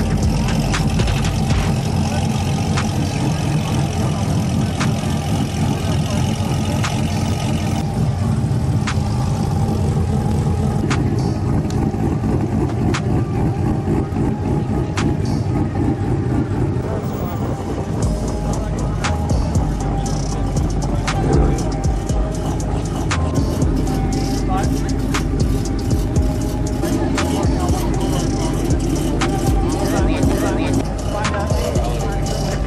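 Sports car engines running at low speed as cars roll past one after another, with music and voices mixed in.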